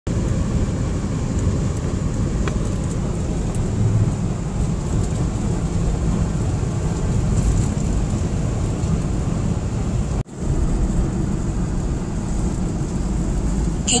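Steady low rumble of a car's road and engine noise heard from inside the cabin while driving at speed. The sound drops out sharply for an instant about ten seconds in, then resumes.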